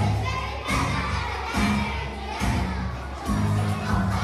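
Children shouting and cheering over recorded dance music with a steady bass beat.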